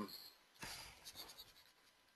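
Faint scratching of a pen on a writing surface, a few short strokes in the first second and a half.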